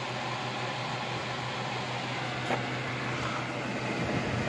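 Steady whir of an electric fan running, with a low steady hum under it and a faint click about two and a half seconds in.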